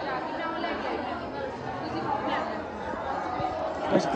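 Background chatter: several voices talking over each other, none clear enough to make out.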